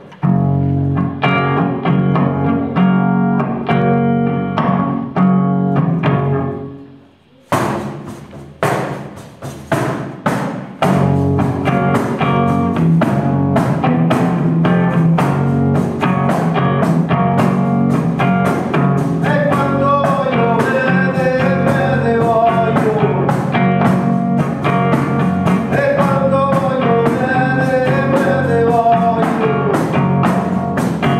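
Live performance of a traditional central-Italian folk song. An electric hollow-body guitar strums chords alone for about six seconds. After a brief pause, tamburello (frame drum) beats come in with the guitar and settle into a steady rhythm, and a voice starts singing about twenty seconds in.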